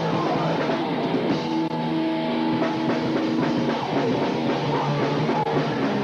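Hardcore punk band playing live, loud and continuous, with a drum kit and electric guitar.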